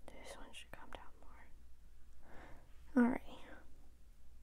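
Soft, mostly whispered speech, with one short voiced word about three seconds in.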